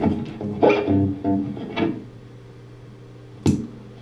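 Les Paul electric guitar played through a Divided by 13 FTR 37 amp. A few picked notes in the first two seconds ring and fade, then one sharp pick strike comes about three and a half seconds in.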